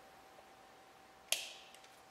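A single sharp snip about a second into otherwise quiet room tone: a wire cutting and stripping tool cutting through a thin lead wire.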